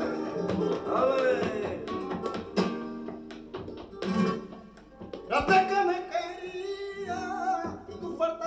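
Flamenco por bulerías: a man sings cante jondo-style phrases with wavering, ornamented pitch, accompanied by a Spanish flamenco guitar played with sharp strummed and plucked attacks. The voice sings near the start, drops out briefly around the middle, then comes back with a long melismatic phrase.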